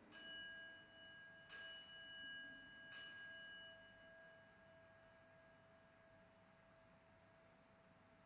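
Altar bell struck three times, about a second and a half apart, each stroke ringing on and fading away, marking the elevation of the chalice after the consecration at Mass.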